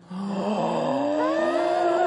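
Several children's voices hold a long, breathy vocal note together on different pitches, slowly rising, as they breathe out.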